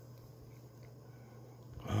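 Quiet room tone with a faint, steady low hum and no distinct events. A man's voice begins right at the end.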